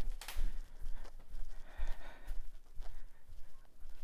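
Handling rumble and soft irregular thumps of a handheld phone carried by someone walking, with faint breathing.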